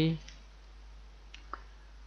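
A few faint clicks from a computer mouse over a low steady microphone hiss.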